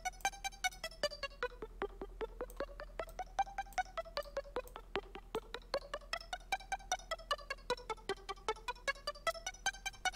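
Native Instruments Massive software synth playing an arpeggiated pluck patch: a fast, even stream of short plucked notes whose tone rises and falls in slow waves about every three seconds.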